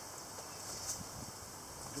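Quiet outdoor background: a steady high-pitched hiss with a few faint soft knocks, like a handheld camera being moved.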